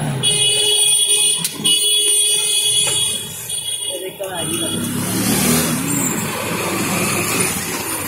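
A shrill, steady horn-like tone sounds twice, each time for about a second and a half, over voices. Then only the chatter of people goes on.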